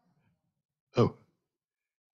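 A man's voice saying a single short 'oh' about a second in; otherwise near silence.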